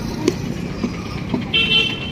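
School bus engine idling close by with a steady low hum, a few light knocks, and a short high-pitched beep near the end.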